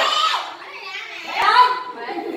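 Young children's voices: a high-pitched call at the start and another about one and a half seconds in, with a sharp click just before the second.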